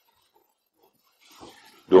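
A pause in a man's talk: near silence, then a faint short sound and his voice starting again at the very end.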